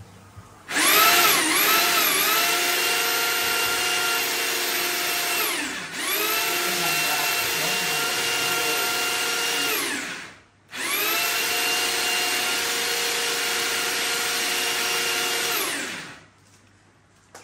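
Electric drill spinning a drum-type spring-cable drain cleaner to clear a blocked kitchen sink drain. The drill runs three times with short pauses; its whine wavers at first, holds steady, and drops in pitch as each run winds down.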